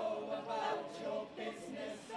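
A choir of men's and women's voices singing together.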